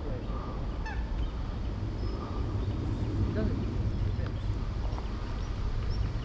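Geese honking in several short calls over a steady low rumble.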